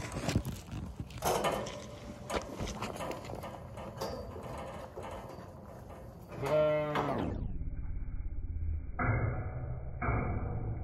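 Galvanised metal sheep hurdle gate clanking and rattling as it is handled, with a Zwartbles sheep bleating once about six and a half seconds in. After that the sound turns dull and muffled.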